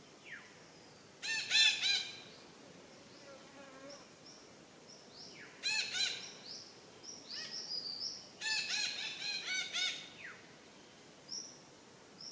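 Red-breasted parakeets calling. Bursts of harsh, repeated notes come about a second in, around six seconds in, and from about eight and a half to ten seconds, with short rising whistled notes between them.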